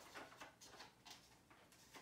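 Near silence with a few faint, short plastic clicks and rustles as Mega darts are pushed into the barrels of a Nerf Mega Doublebreach blaster.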